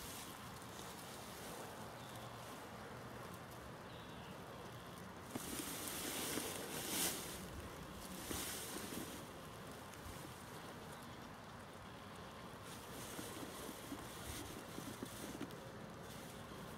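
Wind on the microphone outdoors, with soft rustling and a short stretch of louder rustling and one brief sharp noise about six to seven seconds in.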